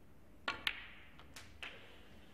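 Snooker shot being played: two sharp clicks close together about half a second in, from cue tip and balls striking, then a few lighter clicks of balls touching.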